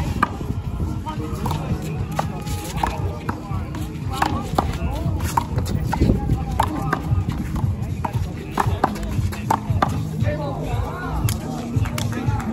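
One-wall handball rally: a small rubber ball smacked by open hands and bouncing off a concrete wall and court, sharp single smacks at irregular spacing of about one to two seconds. Music and voices play underneath.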